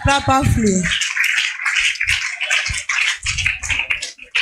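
A congregation cheering and shouting loudly in acclamation. The dense wash of many voices swells up about a second in, just after a man's amplified voice, and holds.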